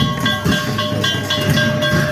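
Ringing metal percussion struck in a steady rhythm about three times a second, over low drum beats: live traditional percussion music amid a crowd.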